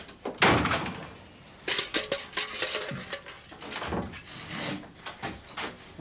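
A wooden hut door banging about half a second in, followed by a run of irregular knocks and clatter.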